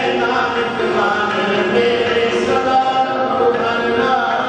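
Sikh kirtan: voices singing a devotional hymn in a chanting style over steady held notes, running on without a break.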